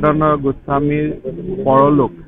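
A man speaking into press microphones, his voice low with drawn-out vowels.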